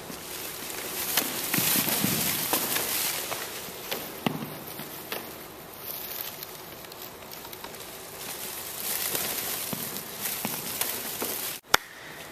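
A steady hiss of background noise with scattered soft knocks and thumps, and one sharp click near the end.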